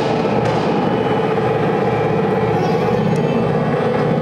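Experimental drone music in D: an amplified violin run through effects pedals, making a thick, steady, grainy drone that holds without a break.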